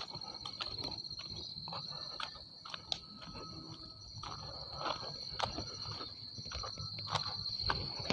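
Insects droning on one steady high note, with irregular crunching footsteps on the track ballast.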